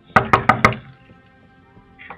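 Four quick knocks with a fist on a door, over faint background music.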